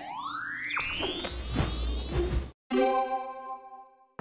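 Cartoon sound effects: a long rising whistle sweeping up over about two and a half seconds with a few soft knocks under it, then a sudden cut to silence and a held chime-like note that fades away.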